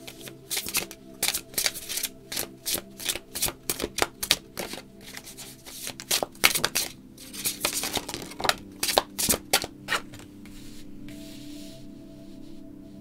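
A deck of tarot cards shuffled by hand: a quick, irregular run of sharp card snaps that stops about ten seconds in, over steady ambient background music.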